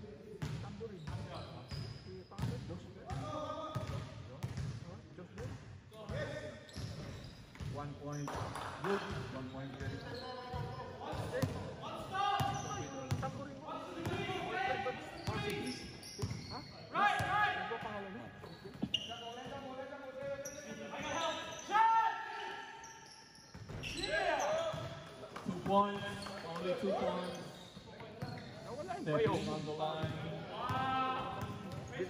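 A basketball bouncing on an indoor court amid players' indistinct calls and voices, all echoing in a large sports hall.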